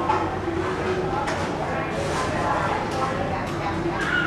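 Indistinct voices talking in a room, with a few sharp clicks about a second in and again near the end.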